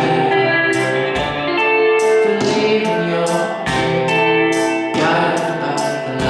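A male voice singing a slow song over sustained grand-piano chords, with a fresh chord struck every second or two.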